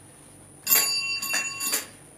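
A small bell ringing, struck about three times in quick succession starting a little over half a second in, each strike sounding the same bright ringing tones.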